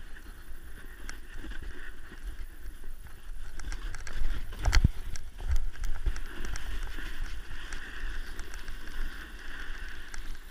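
Snowboard sliding over packed snow, a steady hiss and scrape, with wind rumbling on the microphone and clothing brushing against the camera in small clicks. A sharp knock comes about five seconds in.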